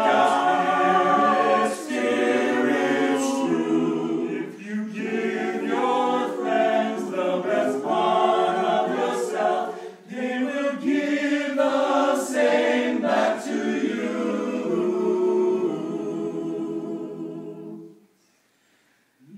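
Small men's vocal ensemble singing a cappella in harmony, with several voices moving together and ending on a long held chord.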